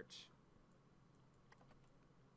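Near silence with a few faint clicks at a computer, about one and a half seconds in.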